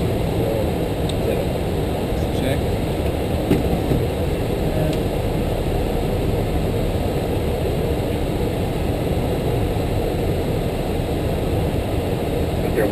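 Steady flight-deck noise of an Airbus A330-300 in flight: a constant low rush and hum that does not change.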